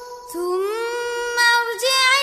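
A girl singing a Bengali ghazal: after a short breath she slides up into a long, steady held note.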